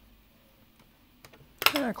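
Faint, small clicks of hands handling a wire and microswitch inside an opened plastic Nerf blaster shell, then a man's voice starts near the end.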